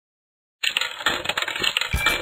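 A coin dropped into a coin slot, rattling and clinking through the coin mechanism for about a second and a half and ending in a low thud. It starts about half a second in and registers as one credit.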